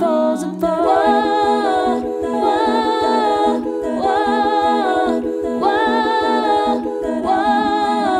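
Layered multitrack a cappella voices of one woman: wordless hummed chords swell and fall about every second and a half over a steady pulse of short, repeated low vocal bass notes.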